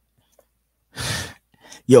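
A man's short, breathy exhale into a close microphone about a second in, after a moment of near silence.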